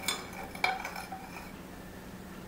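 Metal spoon stirring sugar into lemon juice in a glass measuring cup, clinking against the glass twice: once at the start and again about two-thirds of a second in, each clink ringing briefly.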